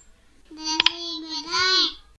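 A child's voice holding one long sung syllable, bending up slightly and then dropping at the end, with a sharp click just under a second in.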